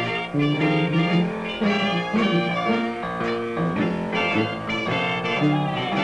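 Traditional jazz band playing an up-tempo tune, with brass horns over a low bass part that moves to a new note about every half second.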